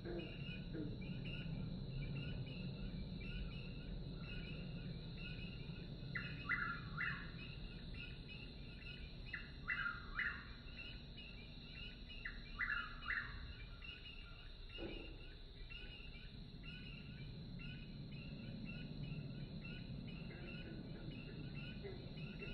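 Swamp soundscape played in a museum diorama: a bird calls in short two-note phrases three times, over a steady insect drone and a regular repeating chirp, with a low hum of the room beneath.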